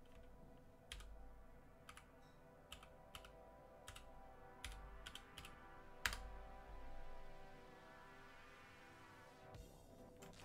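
Computer keyboard keystrokes, about a dozen sharp, irregularly spaced clicks over the first six seconds and one more near the end, as a password is typed at a login prompt. Faint steady background music runs underneath.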